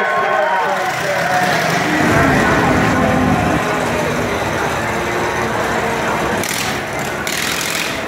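An engine starts about two seconds in and runs on steadily at idle, under voices.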